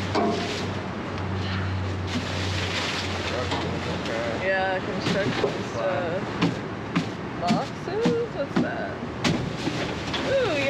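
Trash rustling and knocking against a metal dumpster as it is picked through with grabber tools, with several sharp knocks in the second half. Wind noise on the microphone and a low hum that fades after about three seconds lie underneath.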